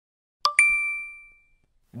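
A two-note chime sound effect: two quick bell-like dings, the second higher, struck in close succession and ringing out as they fade over about a second.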